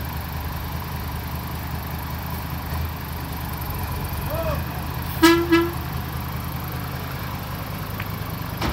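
Hino dump truck's diesel engine running steadily at low revs, with one short horn toot about five seconds in.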